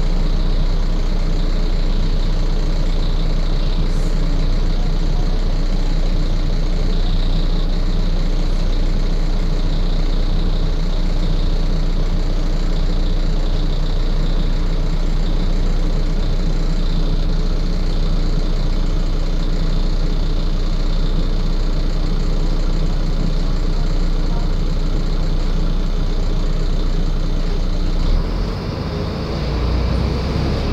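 Diesel engine of a Volvo ALX400 double-decker bus, heard from inside on the upper deck, running steadily at what sounds like idle. Near the end the level dips briefly and the low rumble changes.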